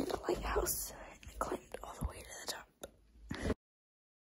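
Whispered, mumbled speech right at the phone's microphone, with rustling and bumping from a hand brushing the phone, then cut to dead silence about three and a half seconds in.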